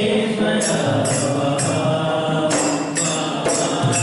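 Devotional bhajan: a man sings a chant-like melody into a microphone, accompanied by a dholak and rhythmic metallic jingling percussion keeping the beat.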